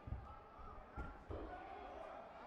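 Thuds of taekwondo kicks and blocks landing, two near the start and two more about a second in, with shouts from the fighters and the crowd after the last one.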